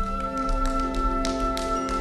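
Symphony orchestra playing held chords, with light taps repeating through them.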